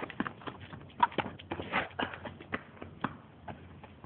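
Players' footsteps running on pavement: a quick, irregular series of short knocks.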